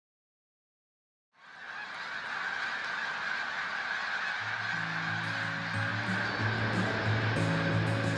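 A large flock of birds calling in a dense, continuous chorus, swelling in after a little over a second of silence. Low, sustained music notes come in underneath about halfway through.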